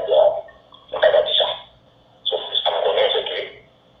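A voice speaking in three short phrases with brief pauses between them. It sounds thin and tinny, cut off below and above as if played back through a small speaker.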